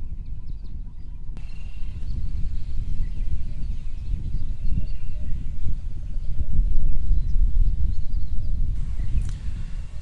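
Outdoor field sound dominated by a low, uneven rumble that swells around the middle, with a few faint, thin high calls above it.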